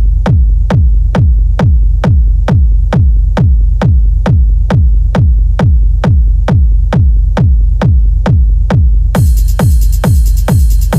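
Techno track stripped down to a four-on-the-floor kick drum: deep, pitch-dropping kicks at an even pace of about two a second under a faint held tone. About nine seconds in, a bright, high layer of the full mix comes in over the kicks.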